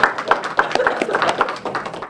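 A few people clapping in a small room, quick irregular claps.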